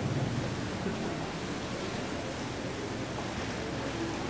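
Steady background noise of a hall, room tone and recording hiss, with no distinct sound standing out.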